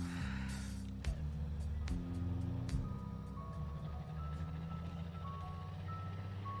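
Low, sustained film-score notes with a few sharp knocks, joined about two seconds in by a thin, high chiming melody: an ice cream truck's jingle.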